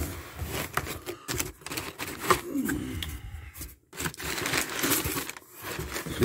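A cardboard shipping box being opened by hand: irregular scrapes, rustles and knocks from the cardboard flaps and the crumpled paper packing inside.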